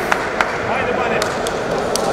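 Arena background of faint voices, with a scattered series of short, sharp knocks.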